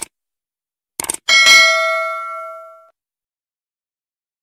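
Intro sound effect: a short click, then a quick pair of clicks about a second in, followed by a bright bell ding that rings out and fades over about a second and a half.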